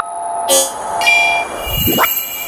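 Electronic music sting for an animated end ident: held synthesizer chords with a rising whoosh near the end.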